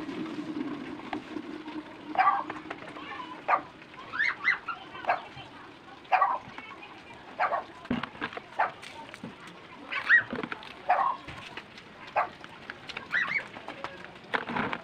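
Short, sharp animal calls repeated at irregular intervals, about one a second, with some calls sliding up and down in pitch.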